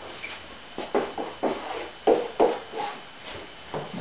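Music playing: a run of separate plucked or struck notes, each starting sharply and dying away, two or three a second.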